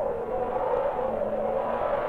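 A steady droning hum from the intro's electronic sound design: a held pad with a faint low tone under it, no beat and no change.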